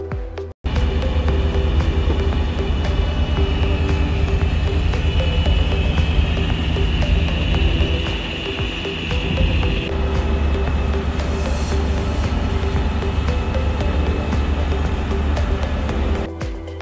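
Ferretti 49 motor yacht under way at sea: a loud, steady engine drone mixed with wind and water rush, starting suddenly about half a second in and shifting in tone near the middle.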